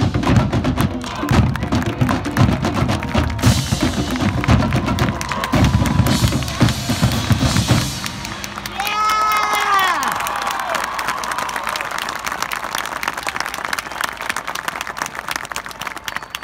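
Marching band playing a loud, drum-heavy passage with bass drums pounding; it cuts off about halfway. A crowd then whoops and cheers and keeps applauding, the applause slowly dying down.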